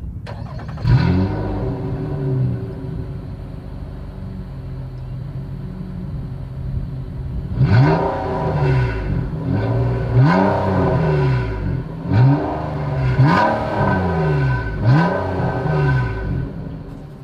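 2020 Nissan Maxima's 3.5-liter V6 heard at its dual exhaust outlets. It flares up about a second in, as on start-up, and settles to a steady idle. From about eight seconds in it is blipped about five times, each rev rising and falling quickly back to idle.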